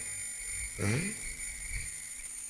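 A steady high-pitched electronic whine in the recording, with a short spoken sound from a man about a second in.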